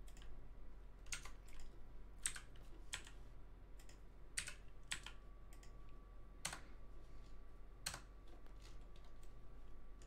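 Computer keyboard keys pressed in short, irregular, faint clicks, as shortcuts are entered while working in 3D software.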